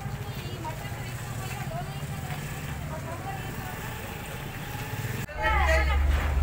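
People talking at a distance over a steady low rumble. Just after five seconds it cuts sharply to closer, louder speech over a low hum.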